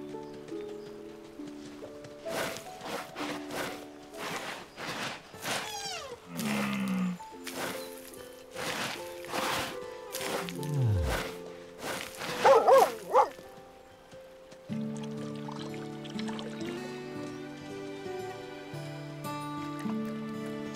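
Cartoon background music throughout, with a quick run of scraping strokes in the first half from a dog digging with its paws in dry earth. A brief loud warbling sound comes about twelve seconds in.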